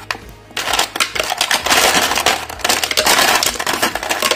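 Ice cubes sliding out of a plastic tub and tumbling into a plastic blender jar, a loud, busy clatter of many knocks that starts about half a second in and keeps going.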